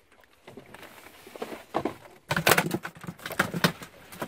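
A quick clattering run of knocks and rattles from handling in an aluminium fishing boat, starting about two seconds in and lasting a second or so.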